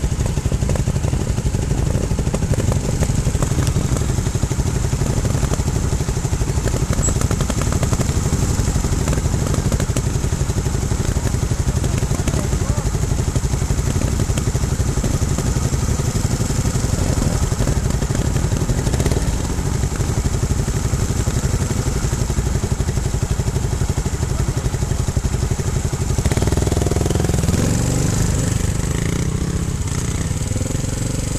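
Single-cylinder trials motorcycle engines running at idle, a steady low rumble. Near the end one engine's note rises as a bike pulls away up the slope.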